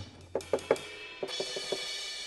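Virtual drum kit in EZdrummer 2, played from a MIDI keyboard: a few separate drum hits, then a cymbal ringing on from just over a second in, with more hits beneath it.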